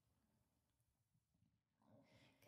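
Near silence: faint room tone in a pause between sung lines.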